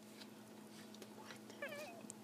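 Quiet room with a steady low hum; about a second and a half in, one brief faint high-pitched wavering call.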